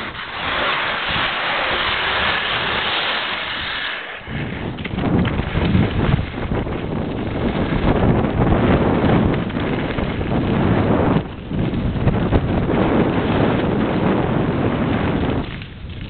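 Wind rushing over the microphone of a camera carried by a skier on the move, with the hiss of skis sliding on snow. A higher hiss fills the first four seconds, then a loud low wind rumble takes over, dropping away briefly about eleven seconds in.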